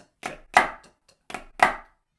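Drumsticks striking a pipe band drum practice pad in a pataflafla-style sticking pattern: twice, a soft tap followed by a loud accented stroke, the pairs about a second apart.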